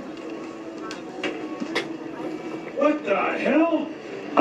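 A glass salt shaker giving a few sharp clicks as it is handled and tossed. Near the end comes a short stretch of a person's voice without clear words, the loudest sound, over a steady low hum.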